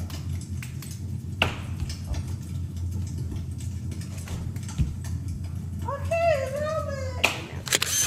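A toddler's high voice calls out once for about a second, a little before the end, over a steady low hum. A few sharp knocks come before it and right after it.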